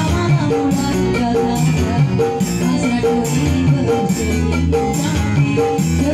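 Live dangdut music from an orgen tunggal single-keyboard rig: keyboard melody notes over a steady electronic beat with shaker-like percussion, amplified through a PA.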